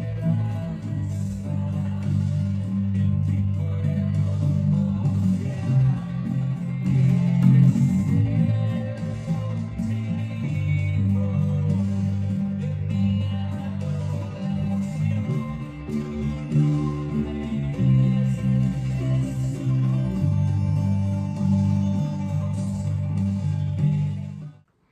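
Electric bass guitar playing long held root notes that change every second or two, over a recorded full-band worship song with a steady drum beat.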